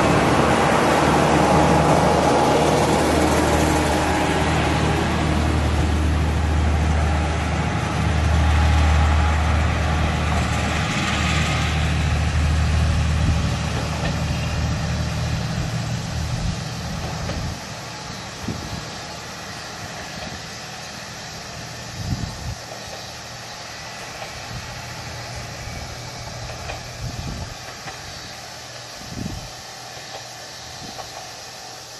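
Diesel railcar on a single-track branch line moving away, its low engine drone and wheel noise loud at first and fading steadily as it recedes. From about 17 seconds in only a quieter background remains, with a few light knocks.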